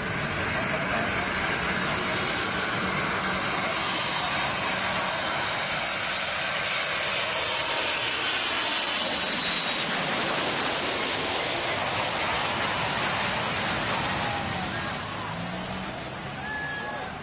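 A jet airplane passing low overhead: a high engine whine over a loud rush of noise that is strongest around the middle and eases off in the last few seconds.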